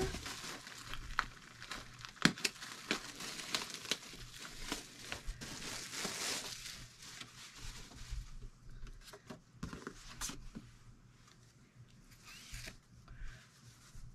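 Clear plastic wrapping on a fabric bundle crinkling as it is handled and unwrapped: dense rustling with sharp crackles for the first six seconds or so, then scattered crackles and clicks, fainter toward the end.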